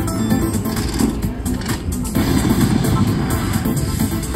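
IGT Hot Hit Pepper Pays slot machine playing its electronic free-games bonus music while the reels spin and stop.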